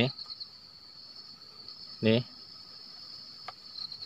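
Steady high-pitched drone of forest insects, one unbroken whine, with a faint click shortly before the end.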